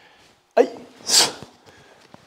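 A man counts "ichi" aloud, then gives one short, sharp hissing exhale through the teeth as he executes a karate technique: the forceful "tch" breath that marks each strike.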